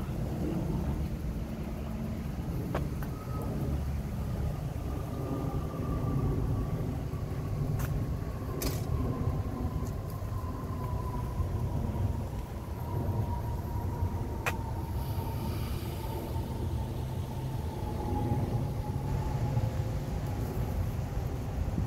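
Steady low rumble of distant motor vehicles, with a faint whine falling slowly in pitch throughout and a few sharp clicks near the middle.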